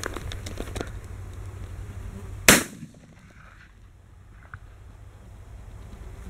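A single shotgun shot about two and a half seconds in, sharp and loud with a short ringing tail. Wind rumbles on the microphone, with a few faint clicks of handling near the start.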